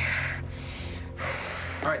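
A woman in labour taking two heavy, breathy gasps through a contraction, one at the start and one just past halfway, over a low, steady music score.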